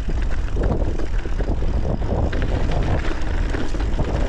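Mountain bike riding fast down a rough trail: wind buffeting the microphone as a steady low rumble, with tyres rolling over rocky ground and many small rattles and clicks from the bike.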